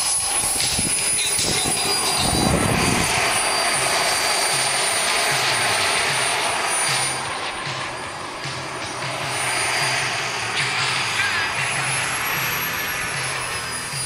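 A radio-controlled model jet's turbine engine running: a steady high whine over a rushing exhaust noise, the whine wavering in pitch near the end. A brief low rumble comes about two seconds in.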